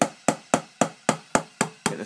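Even, repeated hits on an Alesis DM10 electronic tom pad, about four a second. The pad has just been remapped to a new MIDI note and is starting to trigger a cymbal sound from EZdrummer.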